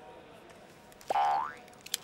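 Comic sound effect: one short rising 'boing'-like glide about a second in, lasting about half a second.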